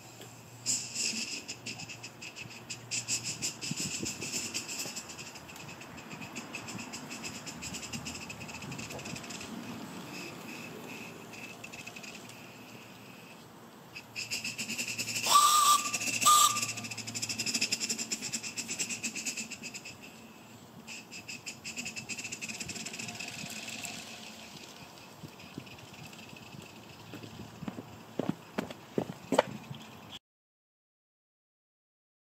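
Coal-fired live-steam garden-scale light railway locomotive by Reppingen running around the track: steam hiss with fast, light exhaust ticking that grows loudest as it passes about halfway through, when a brief high tone sounds twice. A few sharp clicks come near the end.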